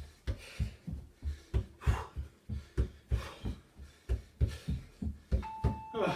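Feet stepping on and off a plastic aerobic step platform in a steady rhythm, about three footfalls a second, with heavy breathing in between. Near the end a single steady electronic beep, about a second long, sounds from the interval timer marking the end of the work period.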